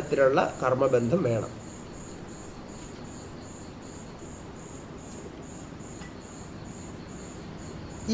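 A cricket chirping steadily in the background, an even high-pitched pulse repeating two or three times a second over faint room hiss.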